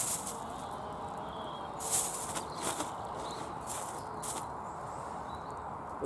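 Hands sifting potatoes out of compost on a plastic tarp and dropping them into a plastic carrier bag: several short rustles and crinkles over a low steady background.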